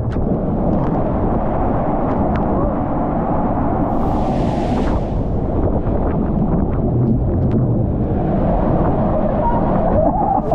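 Steady loud rush and rumble of water under an inflatable raft riding a ProSlide water coaster, with wind on the microphone, and scattered small knocks and splashes.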